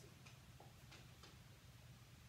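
Near silence with a few faint, irregular clicks of a yellow Labrador's claws on a hardwood floor as it walks and turns.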